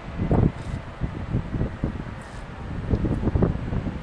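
Wind buffeting the microphone in uneven gusts, a low rumbling rush that comes and goes.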